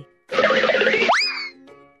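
A short cartoon sound effect: a burst of rushing noise lasting under a second, then a quick rising whistle glide that levels off and fades, over light children's background music.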